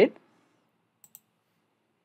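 Two quick, faint computer mouse clicks close together, about a second in, made while choosing a menu item. The end of a spoken word is at the very start.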